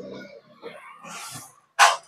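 A dog barking, with one short, loud burst near the end.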